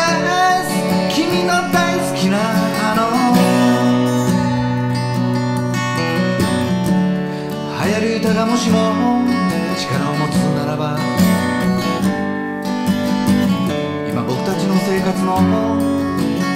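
Steel-string acoustic guitar strummed in steady chords, with a harmonica playing the instrumental break over it in wavering, bending notes.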